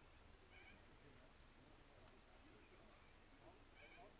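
Near silence: faint outdoor background noise, with two brief faint high-pitched tones, one about half a second in and one near the end.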